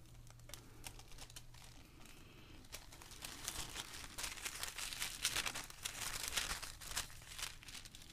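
Printed tissue paper crinkling and rustling in the hands as it is lifted and positioned, with a quick run of crackles that is busiest through the middle few seconds.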